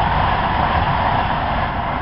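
Loud, steady engine drone with a low rumble underneath.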